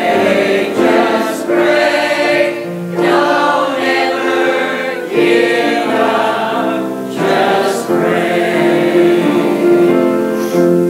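Mixed church choir of men and women singing a gospel song in sustained chords, in phrases that break every couple of seconds, with piano accompaniment.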